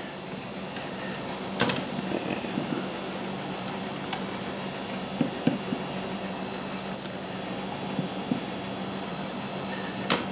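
Plastic washing-machine agitator parts being pushed together by hand: a few scattered knocks and clicks, the sharpest about two seconds in and another at the end, over a steady low hum.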